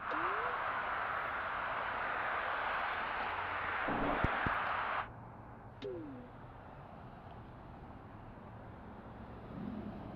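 Roadside traffic noise, a steady hiss of passing cars. About five seconds in it drops sharply and turns muffled, the higher sounds cut away, as the Jabra Elite 4 Active's active noise cancelling takes effect. A brief falling tone follows just after the drop.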